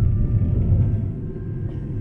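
Low rumble of an aerial ropeway gondola as it passes a support tower, its carriage running over the tower's rope sheaves. The rumble eases off after about a second.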